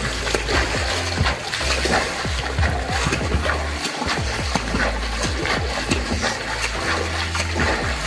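Water splashing from a swimmer's arm strokes in a pool, with many short splashes. Background music with a deep bass runs underneath.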